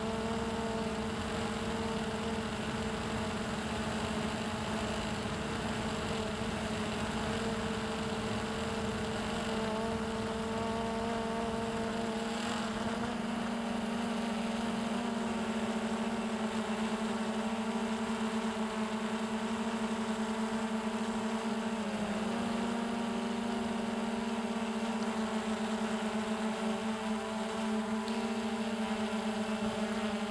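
Hubsan X4 Pro H109S quadcopter's motors and propellers humming at a steady pitch as it flies home on automatic return-to-home, with one brief dip in pitch late on.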